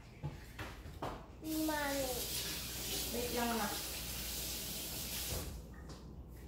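Kitchen sink tap running for about four seconds: water starts about a second and a half in and shuts off near the end.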